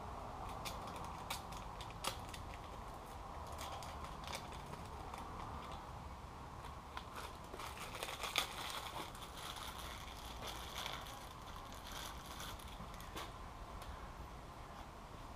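Scattered light clicks and crinkling of engine parts and plastic packaging being handled, busiest about eight to nine seconds in, over a steady faint hiss.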